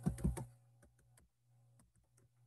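Computer keyboard keys being typed: a quick cluster of clicks in the first half-second, then a few faint, scattered taps.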